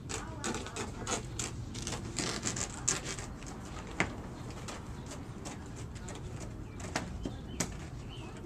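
Stiff reinforced-polyethylene pond liner crackling and rustling as it is pulled and pressed into the pond's contours. There is a dense run of sharp crackles in the first few seconds, then single sharp snaps about four seconds in and again near the end.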